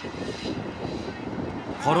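Steady rushing outdoor street noise with faint chatter from a crowd of pedestrians walking.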